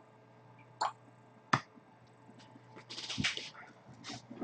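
Trading cards being handled on a glass-topped desk: two sharp taps about three-quarters of a second apart, then a short burst of rustling and small clicks near the end.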